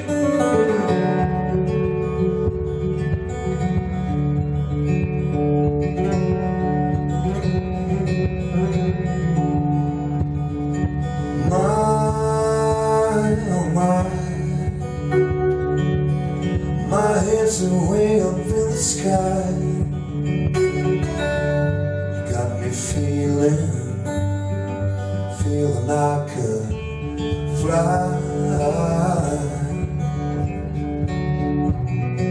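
Acoustic guitar played live, strummed and picked in an instrumental passage between the sung verses of a song.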